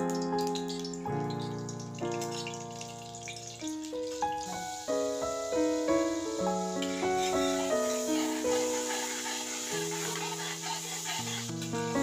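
Background keyboard music with a simple melody. From about four seconds in, margarine sizzles as it melts in hot cooking oil in the pan, a steady hiss under the music.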